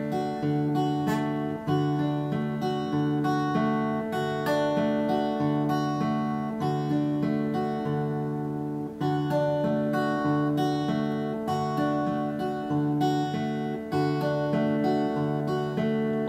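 Steel-string acoustic guitar fingerpicked in a steady repeating pattern over a D chord: a bass note plucked together with the first string, then single strings in turn, the notes ringing into each other.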